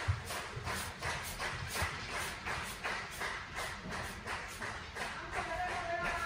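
An audience clapping in unison at a steady beat, about four claps a second, calling for an encore, with a few low thumps in among the claps.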